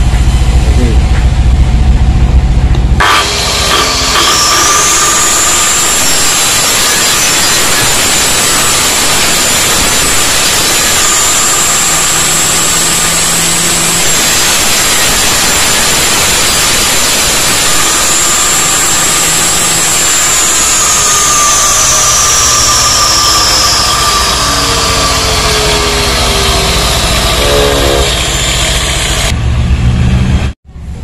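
Homemade table saw running with a low hum, then cutting wood along the fence from about three seconds in: a loud, steady rushing noise with a high whine that climbs as the cut starts and sinks in pitch over the last third, stopping just before the end.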